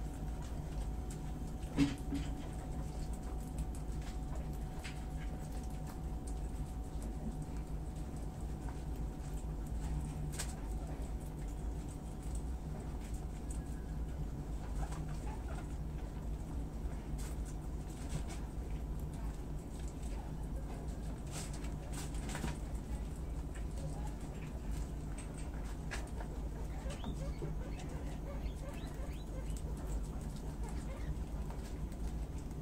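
A rabbit and guinea pigs munching leafy greens: faint scattered crunches and leaf rustles over a steady low hum, with one sharp click about two seconds in.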